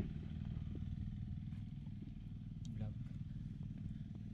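A small engine running steadily with a low, even hum, with a brief word spoken near the end.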